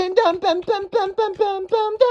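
A young man's voice singing a rapid run of short repeated syllables, about six a second on a nearly even pitch, with no backing music. He is mouthing the song's melody and beat himself.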